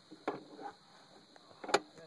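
Handling sounds of a muzzleloader rifle as the prone shooter settles it to his face: a soft knock about a quarter second in and a single sharp click near the end.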